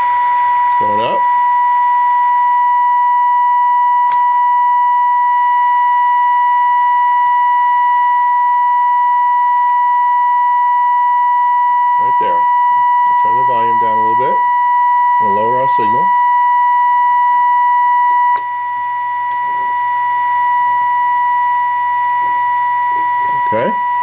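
Steady 1 kHz test tone from a vintage radio's loudspeaker, over a low hum: the signal generator's modulated 1500-kilocycle signal is being received while the set's trimmer is aligned. The tone drops a little in level past the middle.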